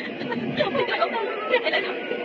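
A woman crying, her voice rising and breaking unevenly, over a steady hiss of rain.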